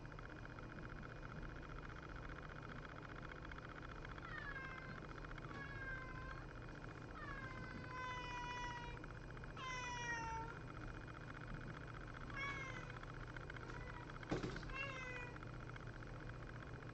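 A house cat meowing about six times, starting a few seconds in, each meow sliding down in pitch. A single sharp knock sounds near the end, just before the last meow, over a steady low hum.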